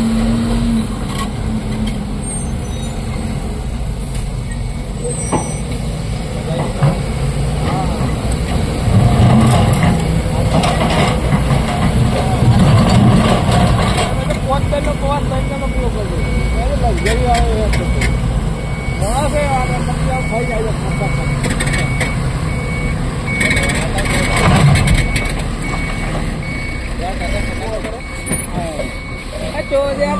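Diesel engine of a BharatBenz dump truck running as it moves across the quarry floor, and from about halfway its reversing alarm beeps at an even pace as it backs up to the excavator.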